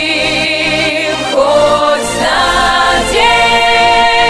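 Song with singing voices holding long notes with vibrato, the pitch shifting a couple of times midway.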